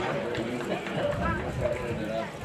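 Voices of people talking and calling out across an open-air football ground, over outdoor background noise.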